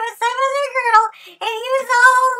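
A high-pitched, sing-song voice, drawn out and without clear words, breaking off briefly a little after a second in.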